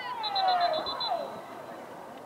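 People shouting, with one long call that falls in pitch in the first second. Under it runs a quick string of about seven short, high beeps.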